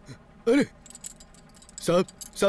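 Heavy metal chain clinking and jangling faintly, between a man's short exclamations.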